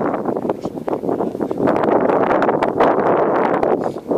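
Wind buffeting the microphone: a loud, ragged rush of noise that grows stronger about a second and a half in.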